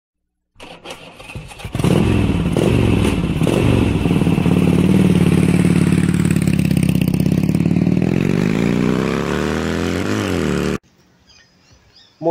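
A motorcycle engine starts up, then runs loud and steady. Near the end it is revved up and back down, and it cuts off abruptly.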